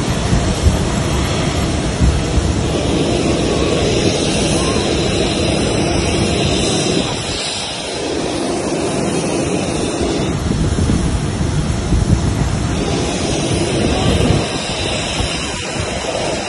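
Steady rushing wind on the microphone mixed with the low roar of a parked airliner close by, dipping briefly about eight seconds in.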